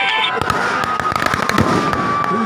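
Firecrackers going off in rapid, irregular cracks over a shouting crowd, with a steady high tone starting about half a second in.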